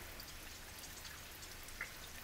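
Faint, steady background of running, bubbling aquarium water with light crackles, and a small click near the end.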